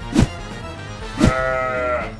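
Background music with two drum-like hits. After the second hit, a cartoon calf gives one held, bleat-like cry whose pitch rises and falls slightly.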